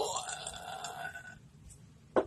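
A man's drawn-out, wordless, exasperated groan, lasting about a second and a half and trailing off.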